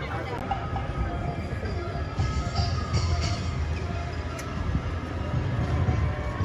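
Drums and music from an outdoor show playing steadily, with background voices.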